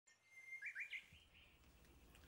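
A bird chirping faintly: a thin held whistle, then a few quick rising chirps within the first second.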